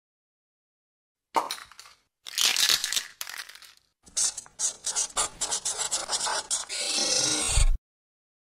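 Sound effects for a logo intro: a sharp hit a little over a second in, a rush of hiss, then a run of quick clicks and scraping that thickens into a dense hiss with a low thump, cut off suddenly just before the logo appears.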